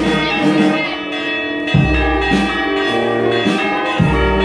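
A brass band playing slow procession music with deep bass drum beats, while church bells ring over it.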